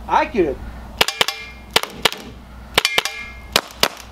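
Compressed-air PepperBall launcher firing a quick string of about seven sharp shots, several in close pairs. Some shots are followed by a short metallic ring as the balls strike a steel shovel.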